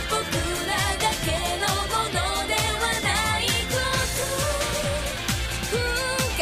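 Ending theme song of an anime: a pop song with a sung lead vocal over a steady drum beat.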